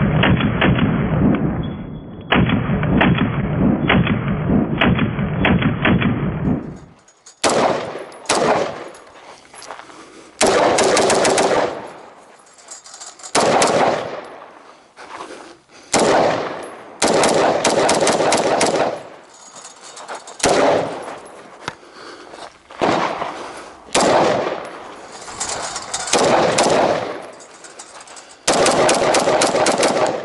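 AR-15-style rifle with iron sights fired in rapid strings of several shots, with short pauses between strings, each shot echoing. The first several seconds sound muffled and dull before the shots turn crisp and sharp.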